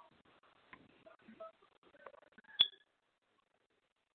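Faint clicks and short electronic beeps at different pitches, with one sharp click and a brief high beep about two and a half seconds in.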